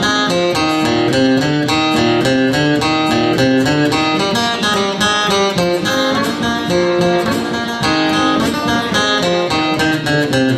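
Acoustic guitar playing an instrumental break of a country song, a picked melody over chords with the notes changing several times a second.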